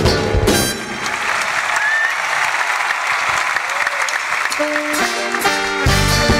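A live circus band's music stops on a final chord near the start, followed by audience applause for several seconds; about five seconds in the band starts playing again.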